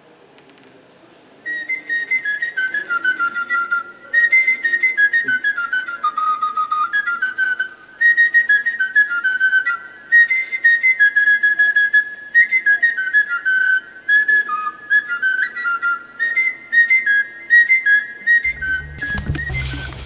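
Background film music: a single high melody line of short notes stepping up and down, entering about a second and a half in. A low, heavy beat joins near the end.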